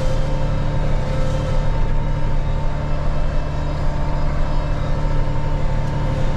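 Case IH tractor's diesel engine running at a steady speed as the tractor drives across a field, a constant low drone with a steady hum over it.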